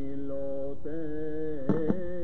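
Recording of a Turkish cantor singing a synagogue melody solo, holding long ornamented notes that glide from pitch to pitch, played back over loudspeakers into a lecture hall. Two short knocks come near the end.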